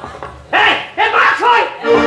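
A stage performer's loud shouted voice: a run of short cries, starting about half a second in and following each other quickly.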